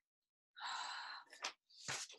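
A woman's long breathy sigh about half a second in, followed by a couple of faint clicks and a short intake of breath.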